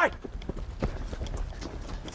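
Footsteps of several people hurrying over dirt and gravel, irregular scuffs and taps over a low rumble.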